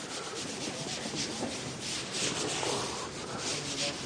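A run of rubbing strokes on a writing board as it is wiped clean, a scratchy hiss that comes and goes with each stroke.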